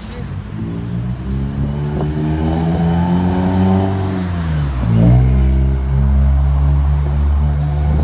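A motor vehicle's engine on the street, revving up with a rising pitch, then dropping sharply in pitch about five seconds in, where it is loudest, and carrying on as a steady low rumble.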